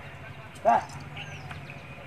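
A single short, loud vocal call about two-thirds of a second in, over a steady low hum.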